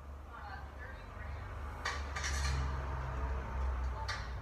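Audio of a comedy video clip played through a tablet speaker: faint voices, then a sharp clatter about two seconds in, over a steady low hum.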